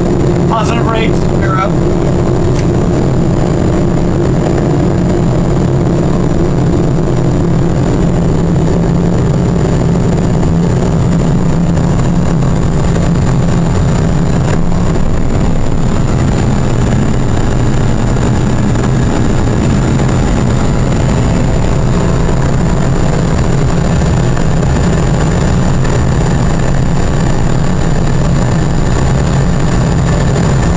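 Simulated Boeing 777 engine and runway noise on the takeoff roll and climb-out: a loud, steady low rumble with a thin, steady high whine over it.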